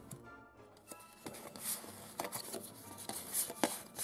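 Quiet background music with light clicks and rustles of cardboard playing cards being drawn from a deck and handled.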